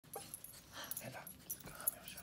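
Small dog whimpering faintly, a few short soft whines.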